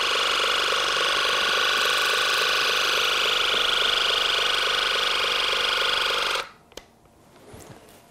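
An ear irrigation machine's pump runs steadily while it flushes warm water through the tip into the ear canal to wash out wax. It cuts off suddenly about six and a half seconds in, followed by a single small click.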